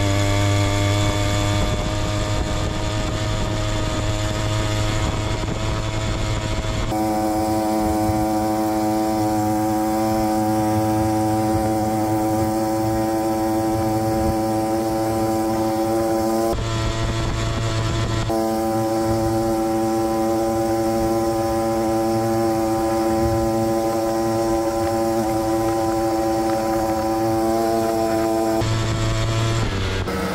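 Small two-stroke brushcutter engine driving a bicycle's front tyre by friction, held at full throttle on a top-speed run, its high, steady note barely changing in pitch.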